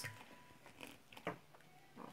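Faint, intermittent glugs of water poured from a plastic bottle into a basin of thick, foamy homemade liquid-soap mixture.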